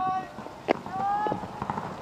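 Drawn-out shouted calls from people, two long calls, with a sharp click about two-thirds of a second in, the loudest moment, and another just after a second.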